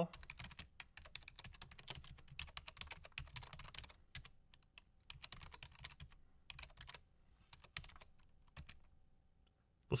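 Computer keyboard typing out a command line: quick runs of keystroke clicks for the first few seconds, then sparser keystrokes, stopping about a second before the end.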